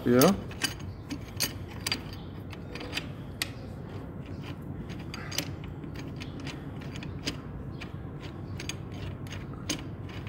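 Light, irregular metallic clicks and ticks as an M12×1.75 bolt is turned into the engine bracket with a long hex key, the key and bolt head knocking against the washer and bracket.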